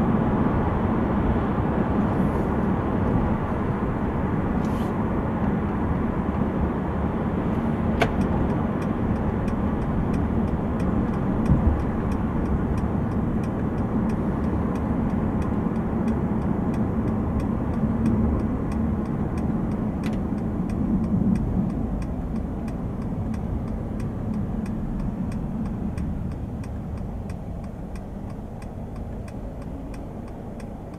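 Cabin noise of a 2015 Mercedes-Benz C220d (W205) on the move: steady four-cylinder diesel engine hum with tyre and road noise. It dies down over the last several seconds as the car slows to a stop. A faint regular ticking runs through most of it, with two sharp clicks.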